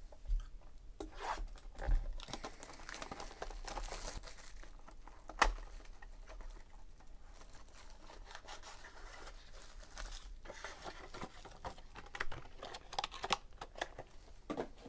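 Plastic shrink-wrap being torn and crinkled off a trading card box, with the cardboard box handled. There is a sharp knock about five seconds in and a smaller one about two seconds in.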